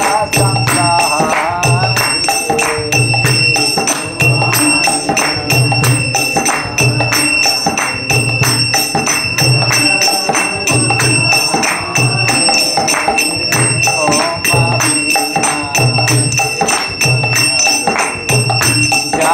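Devotional kirtan music: hand cymbals (karatalas) clash and ring without a break over a low drum beat that falls about once a second, with voices singing.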